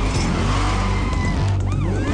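Film soundtrack mix of a car chase: music over a car engine's steady low rumble, with a brief squeal rising and falling near the end.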